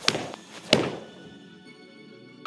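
Two sharp strikes of iron golf clubs hitting golf balls, about two-thirds of a second apart, over background music.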